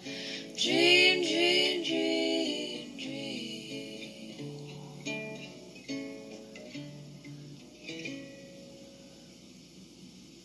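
A woman sings a last held, wavering phrase over an acoustic guitar. The guitar then plays a few last plucked notes that ring and fade away as the song ends.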